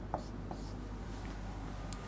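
Marker pen writing on a whiteboard: faint strokes with a few light taps, over a low steady hum.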